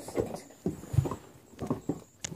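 A few light, irregular knocks and one low thump about a second in, with soft rustling, as a baby doll wrapped in a fabric blanket is handled and turned over.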